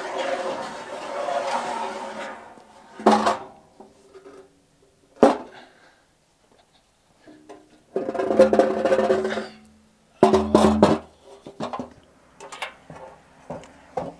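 An aluminium loading ramp sliding out from its stowage under a trailer's loading bed, metal scraping on metal with a ringing tone. Sharp knocks come about 3 and 5 seconds in, a second scraping slide follows near 8 seconds, and then a heavy clank.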